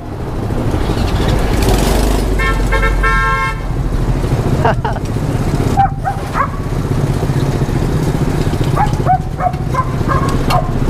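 Homemade scrap-built mini car's small 50 cc motorbike engine running as the car pulls away. A horn sounds once for about a second, a couple of seconds in.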